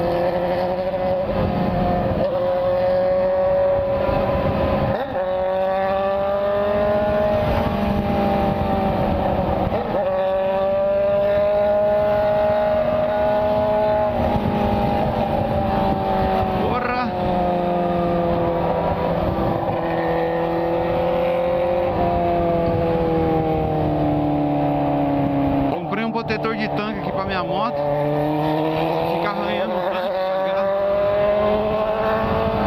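Yamaha FZ6 motorcycle's inline-four engine pulling at highway speed, rising and falling in pitch with brief breaks for gear changes about five and ten seconds in and again near the end. Wind rush is heard on the microphone.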